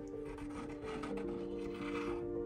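Background music with long held notes, under light rubbing and scraping as a small old metal hook is unfolded and slid across a wooden shelf.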